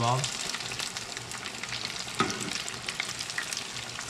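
Battered catfish nuggets deep-frying in hot peanut oil: a steady crackling sizzle. A single sharp click stands out about two seconds in.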